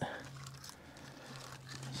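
Faint rustling and handling noise as a gloved hand works among split hedge (Osage orange) firewood, with a steady low hum underneath.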